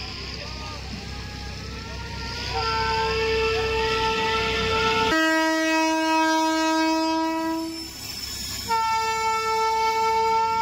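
Train horns blowing long, steady blasts over a low rumble: a first horn starts about two and a half seconds in, switches abruptly to a lower-pitched blast of nearly three seconds, and another long blast follows from about nine seconds. The later blasts come from a passing Indian Railways WAG-12B twin-section electric locomotive.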